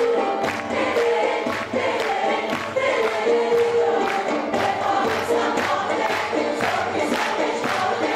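A mixed choir of men's and women's voices singing a Turkish folk song together, over a steady quick beat of sharp strikes, about three or four a second.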